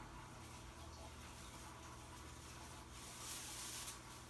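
Silver tinsel garland rustling faintly as it is pulled apart and untangled by hand, a little louder for a moment near the end.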